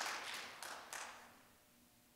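Audience applause dying away, thinning to a few last scattered claps and ending about a second in.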